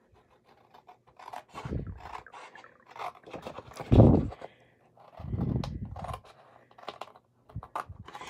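Small scissors snipping through cardstock, making short scratchy clicks, while the stiff sheet is handled and rustles. The loudest moment is a low rustle about four seconds in, when the sheet is lifted.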